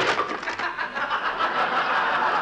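The tail of a crash of a wooden chair splintering (a radio sound effect) right at the start, then a studio audience laughing steadily.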